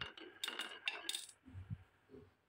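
Glass marbles rolling down a wooden track and clicking sharply against each other as they bunch up in a line behind a wooden gate, a quick run of clinks in the first second or so. A few duller knocks follow near the end.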